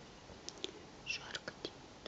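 Soft, irregular rustles and clicks, starting about half a second in, from a kitten pouncing on a feather toy on a fleece blanket.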